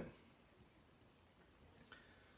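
Near silence: room tone, with one faint small click near the end.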